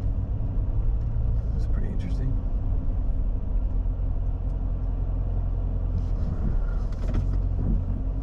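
Dodge Challenger's engine running, heard from inside the cabin as a steady low rumble with a constant hum.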